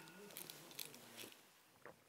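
Near silence, with a few faint small clicks and mouth sounds of people eating baked eggs and sipping a drink from a cup.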